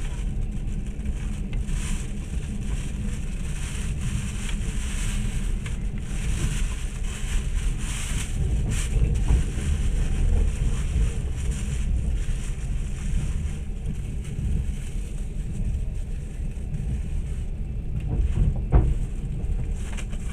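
Moving train running: a steady low rumble of wheels and carriage with wind noise, and one short louder knock near the end.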